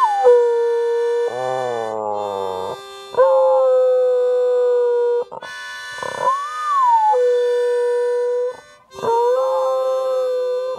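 A harmonica played unskilfully in long held notes, with gaps between them, while a Scottish Terrier howls along; one howl rises and falls about six seconds in.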